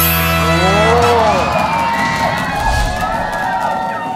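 A game-show music sting that stops about a second in, followed by a studio audience cheering and whooping.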